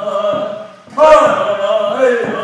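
Two men's voices singing a traditional Blackfoot song in unison, holding long wavering notes. The singing drops away just before halfway and comes back in loud about a second in, with a hand-drum beat.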